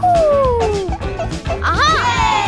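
Cartoon soundtrack: steady background music. Over it, a single pitched tone glides down for about a second at the start, and short rising-and-falling pitched cries come near the end.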